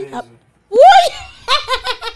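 A woman laughing loudly: a short "ah", a high-pitched squeal about a second in, then rapid fits of laughter at about five a second.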